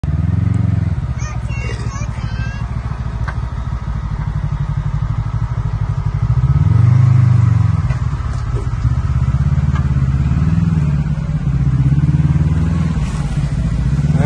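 Kawasaki Teryx KRX 1000 side-by-side's parallel-twin engine running at low revs under load as it crawls through a deep rut, the revs swelling up and falling back several times, most strongly about halfway through.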